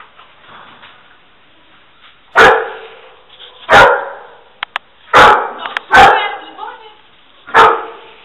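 A search-and-rescue dog barking five times at uneven intervals, each bark ringing on in a bare-walled room.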